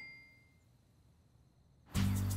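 Ringing tones left by a title-card sound effect die away over the first half second, then near silence. Background music starts abruptly just before the end.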